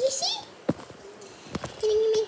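Two sharp kiss-like smacks among short, high-pitched voice sounds, as a girl and a blue-and-gold macaw trade kisses at close range.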